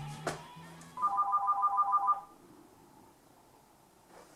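Background music stops with a sharp hit just after the start. About a second in, a cordless home phone rings: a loud, rapid electronic trill of alternating beeps lasting just over a second.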